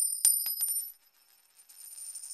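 Metallic coin clinks, likely an edited-in sound effect: several sharp clicks in quick succession with a high ringing that fades within about a second. A fainter, high jingling shimmer starts near the end.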